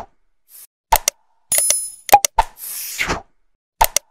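Animated like-and-subscribe sound effects: a quick run of sharp mouse-click-like clicks, a bright bell ding, a pop and a swishing whoosh, looping about every three seconds.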